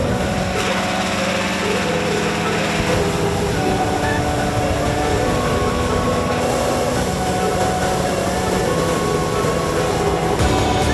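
Engine-driven balloon inflator fan running steadily at speed, blowing cold air into a hot-air balloon envelope during cold inflation.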